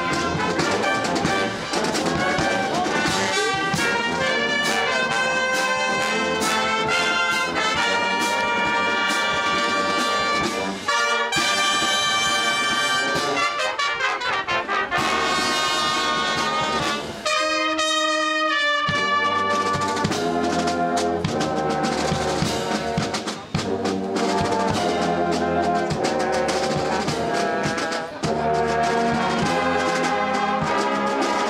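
Marching show-and-drum band playing live: a brass section of trumpets, trombones and sousaphones over drums. Little more than halfway through, the music thins briefly to a single held note before the full band comes back in with a steady low beat.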